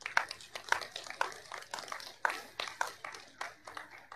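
A small audience clapping: scattered applause dying away near the end.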